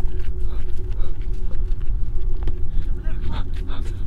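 Low, steady rumble of wind and handling noise on a handheld camera's microphone as the person carrying it runs across a wet parking lot, with a faint steady hum underneath.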